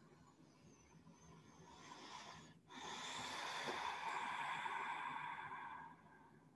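A woman breathing slowly and audibly while holding a deep seated stretch. There is a short, faint breath about a second and a half in, then a longer, louder breath of about three seconds.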